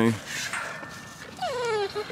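A dog whining once, about a second and a half in: a short whine that falls steadily in pitch.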